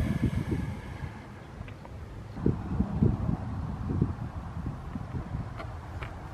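Wind buffeting the microphone, irregular low rumbling gusts.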